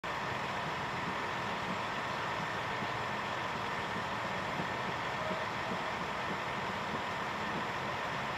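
Large truck's engine idling close by, a steady, unchanging drone.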